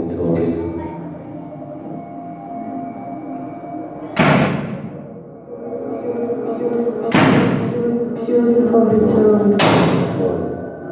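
Live industrial noise music through a PA: layered electronic drones and a steady high whine, struck by three heavy reverberant hits about four, seven and ten seconds in, each ringing out in the hall.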